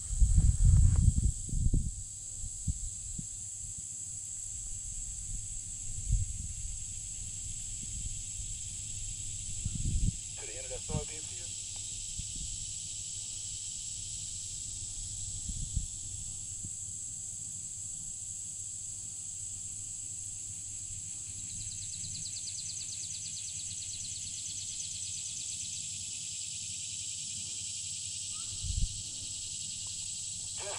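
A steady, high-pitched insect chorus buzzes throughout and takes on a fast, pulsing texture in the second half. Low rumbles of wind or movement come at the start and now and then. A short pitched call is heard about ten seconds in.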